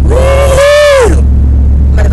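Steady low rumble inside a moving car. Over it, a woman's held vocal 'woo' lasts about a second near the start, rising a little and then dropping away.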